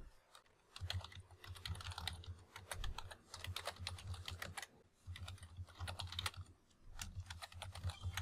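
Typing on a computer keyboard: quick runs of keystrokes with a few short pauses.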